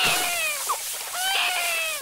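Cartoon character voices screaming: two long wails that fall in pitch, over a steady hiss of spraying water.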